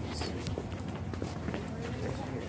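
Footsteps on concrete paving, heard as a string of short, irregular scuffs and knocks, with clothing rubbing against the handheld phone's microphone.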